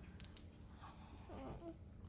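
Quiet room with a few faint clicks early on and a brief faint murmur about a second and a half in.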